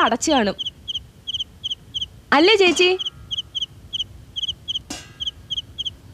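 Cricket chirping steadily in short, high double chirps, about three a second, under a few spoken words; a single sharp click sounds about five seconds in.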